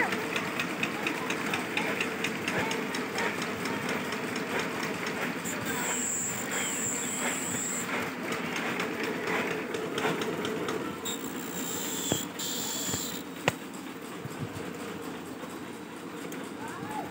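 Automatic incense-stick (agarbatti) making machines running, a fast rhythmic mechanical clatter over a steady hum. A high hiss comes in twice around the middle.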